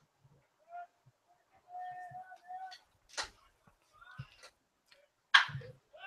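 A near-quiet lull in live baseball commentary: faint, distant voices in the ballpark background, a few soft clicks, and a brief louder sound near the end just before the commentator speaks again.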